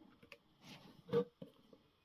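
Fingers handling a paper-board model bus: a few small clicks and taps with a short rustle of card, the loudest tap a little over a second in.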